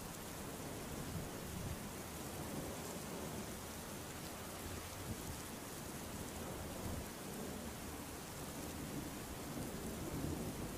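Steady rain falling, an even hiss with a faint low rumble underneath.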